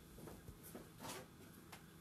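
Near silence: room tone with a steady low hum and a few faint, short soft noises.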